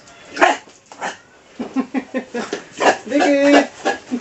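Young fattening pigs grunting in quick runs of short calls, with one drawn-out squeal near the end, while they are doused with water and scrubbed. There is a brief louder burst, likely a splash, about half a second in.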